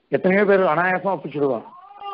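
A man's voice speaking in a drawn-out, rising and falling tone that stops shortly before the end.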